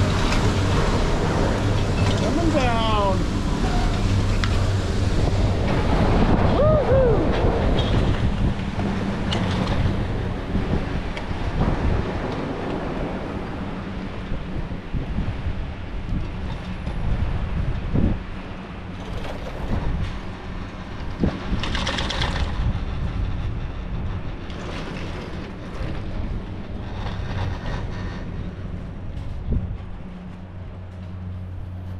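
Detachable chairlift terminal machinery (Doppelmayr CLD-260) running with a steady low hum, with a couple of brief whistling glides as the chair is carried out. The hum fades over the first ten seconds as the chair leaves the terminal, leaving a quieter ride with wind noise and occasional swells of noise.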